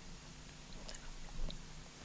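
Quiet handling of a fabric quilt block on a cloth-covered table: a few faint soft clicks and rustles about a second in and again a little later, over low room hum.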